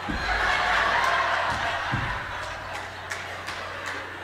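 Audience laughing, swelling within the first second and then dying away over the next few seconds.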